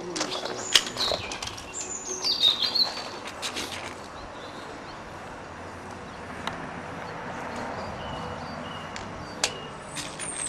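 Birds chirping in the background, with a few sharp clicks from handling, the loudest just under a second in.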